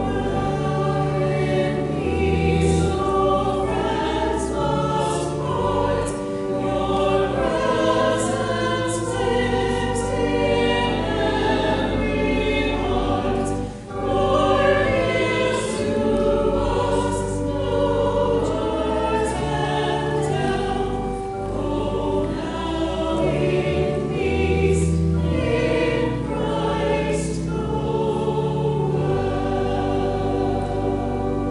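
Church choir singing with organ accompaniment, sustained low organ notes under the voices; the music breaks off briefly about fourteen seconds in between phrases.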